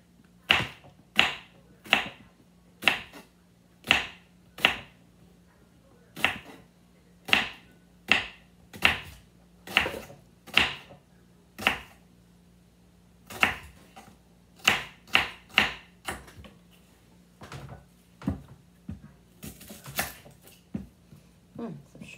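Kitchen knife slicing a peeled onion on a wooden cutting board: about twenty sharp knocks as the blade strikes the board, in uneven runs with short pauses between. A faint steady low hum sits under it.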